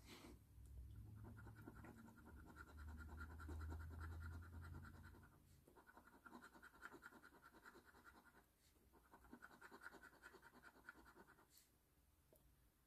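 Faint sound of a coin scratching the coating off a Wild Time Millions scratch-off lottery ticket. It comes in three runs of quick rubbing strokes with brief pauses between them.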